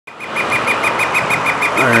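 Northern flicker (red-shafted) giving its long call: a rapid, even series of short, same-pitched 'wik' notes, about seven a second.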